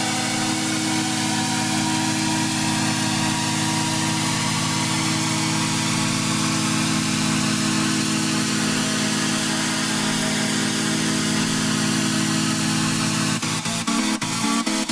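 Techno in a beatless breakdown: a steady droning synth chord with a hiss-like wash above it, the percussion coming back in with rhythmic hits about a second before the end.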